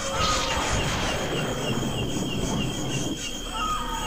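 Insects chirping steadily in a high, thin pulsing tone, about four pulses a second. Over most of this a louder rough, rattling noise of unclear source runs.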